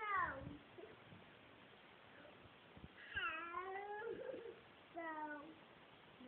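Three meows: a short falling one at the start, the loudest, a longer one about three seconds in, and a short falling one about five seconds in.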